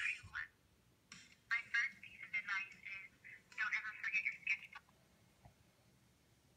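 A voice playing back through a tablet's small speaker, thin and tinny with no bass, in short phrases that stop about five seconds in.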